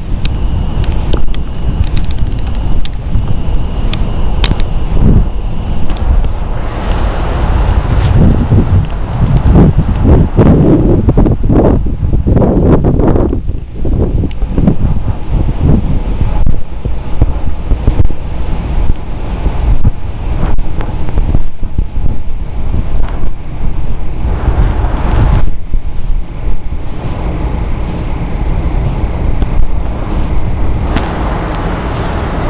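Wind buffeting a camcorder microphone outdoors: a loud, low rumble that rises and falls, heaviest in the middle, with a few small handling knocks.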